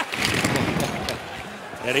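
Ice hockey arena ambience: a steady crowd murmur with a few sharp clicks and scrapes of sticks, puck and skates on the ice.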